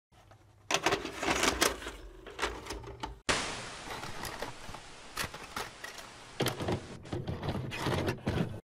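A VCR taking in a VHS cassette: a run of plastic clicks and clunks from the loading mechanism. About three seconds in it changes suddenly to a steady hiss with scattered ticks, and more clunks come near the end.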